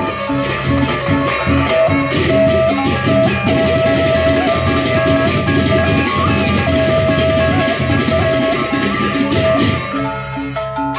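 Sasak gendang beleq gamelan playing a fast, dense piece: rows of bronze kettle gongs (reong) struck in rapid interlocking patterns with padded mallets, over drums and clashing cymbals.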